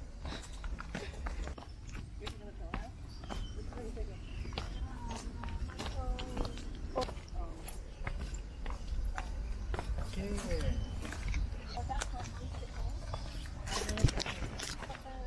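Footsteps of several hikers on a rocky dirt trail: irregular scuffs and clicks of shoes on stones and grit, over a steady low rumble.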